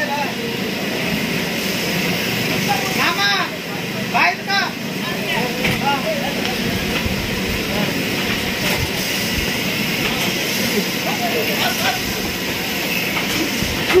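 Steady mechanical drone of a mechanical bull ride running as it spins with a rider on it, with a few short shouts about three and four seconds in.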